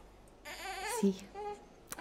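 A baby crying briefly: a short, wavering wail about half a second in, then a smaller whimper.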